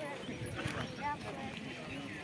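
Crowd chatter: many voices talking at once, with no single voice standing out.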